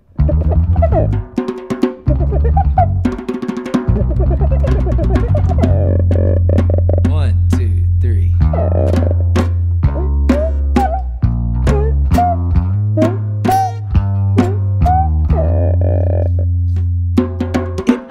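Acoustic band intro: an acoustic bass guitar holding long low notes under strummed and picked acoustic guitars, with a djembe and a small hand drum played with the fingers in a steady funk groove. The band comes in together at once.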